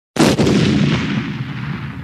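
A single loud boom: a sudden blast just after the start, then a rumble that slowly fades away, like a dropped-in explosion sound effect.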